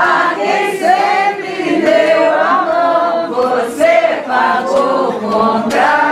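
A group of people singing together, several voices overlapping and holding sustained notes.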